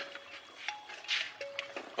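Quiet background music of a few long held notes, with faint scattered clicks and shuffles of footsteps.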